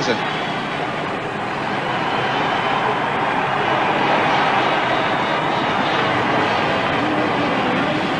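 Several 500cc single-cylinder speedway motorcycles racing together, their engines blending into one steady drone that swells slightly after the first couple of seconds.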